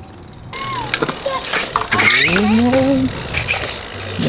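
BMX bike tyres rolling over skate-park concrete, with a few light clicks and knocks. A voice calls out in a long rising tone in the middle.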